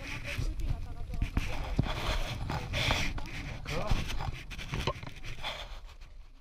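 Crew shifting across a sailing catamaran's trampoline deck as the boat changes tack: rustling, scraping and a few sharp knocks, with wind rumbling on the microphone.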